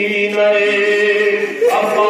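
A man chanting a noha, the Shia Muharram lament, into a microphone. He holds one long note, and a new, higher phrase begins near the end.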